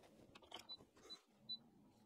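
Near silence with a few faint, short ticks as a fingertip presses the power button on the PrintDry PRO 3 filament dryer's control panel. The dryer does not start and no fan comes on, because of a faulty power button.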